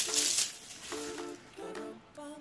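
Light background music of short plucked notes. In the first half second there is a crinkling rustle from a metallic ribbon bow being lifted.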